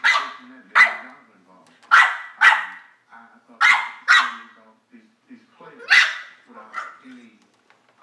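Bulldog barking in short, sharp barks, about seven of them, several in quick pairs, while playing with a puppy.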